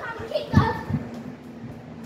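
Children's voices in play, short and indistinct, with a low thump about half a second in and a faint steady hum underneath.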